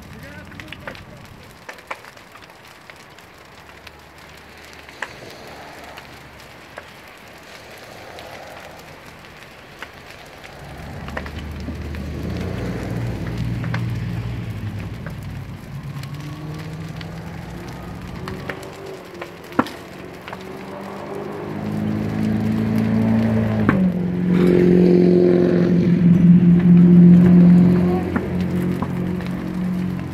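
A vehicle engine running, its low drone growing louder through the second half and easing near the end, with occasional sharp pops from the burning trailer.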